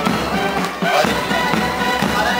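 Military marching band playing, with brass over bass drum and cymbals.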